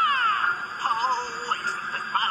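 A cartoon character's high singing voice, starting with long falling slides and then wavering, bending notes, played from a computer's speakers.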